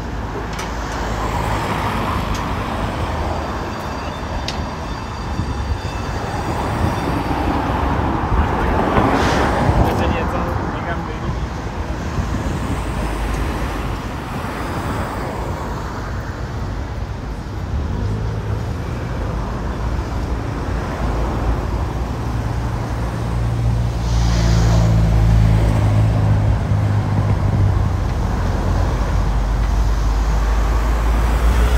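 City street traffic: cars driving past with a steady low rumble, one passing close about nine seconds in, and a heavier vehicle's low engine hum swelling and loudest in the last few seconds.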